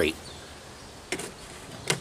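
Quiet outdoor background with a brief soft knock a little past halfway and a short click near the end: handling noise as a steel adjustable wrench is set aside and a gloved hand reaches for a glass mason jar on the table.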